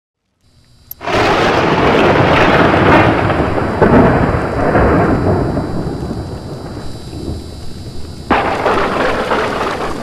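Thunder-and-rain sound effect: a loud thunderclap about a second in that dies away slowly under steady rain, then a second sudden crack of thunder near the end.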